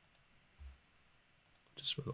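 Faint computer mouse clicks, with a soft low thump about a third of the way in. A man starts speaking near the end.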